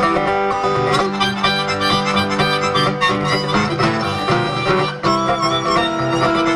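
Two acoustic guitars playing a flatpicked instrumental break between sung verses.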